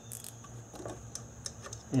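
A few faint, irregular small metallic clicks as a ratcheting screwdriver's T30 Torx bit is fitted onto the camshaft position sensor's fastener, over a low steady hum.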